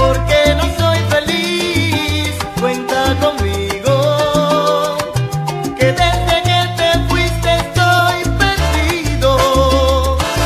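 Salsa music from a DJ mix, with a heavy, prominent bass line in short separate notes under the melody.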